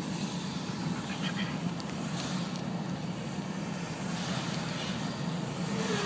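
Steady low drone of a car heard from inside the cabin, the engine and road hum holding at an even level.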